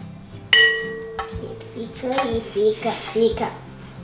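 A spoon clinks once against glass kitchenware about half a second in, ringing briefly, while icing is spooned over a dish of cinnamon rolls.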